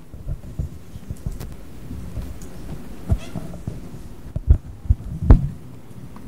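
Microphone handling noise: irregular low thumps and knocks, with the loudest few coming about four and a half to five and a half seconds in.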